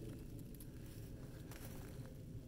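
Faint outdoor background with a low steady rumble and no distinct sound event.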